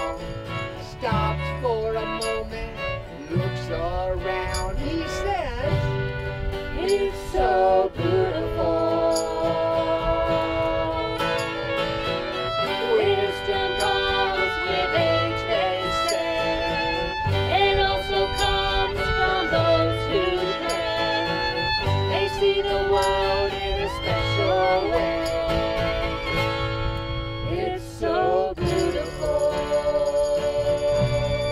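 Live acoustic country band playing an instrumental break: a fiddle carries the melody with slides, over strummed acoustic guitar and a walking upright bass.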